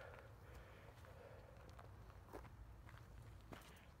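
Faint, soft footsteps of a person walking on grass: a few irregular steps over a low steady rumble.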